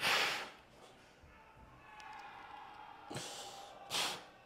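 A man's sharp breaths close to a chest-clipped microphone as he tenses into a flex: a loud exhale at the start, a shorter one about three seconds in and another at the end.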